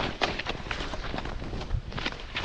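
Snowboard riding fast through deep powder: an irregular rush and scrape of the board and its snow spray, over a low rumble of wind on the microphone.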